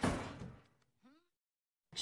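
A restroom stall door slamming shut, one sharp hit that rings and fades out within about half a second. A faint short rising squeak follows about a second in.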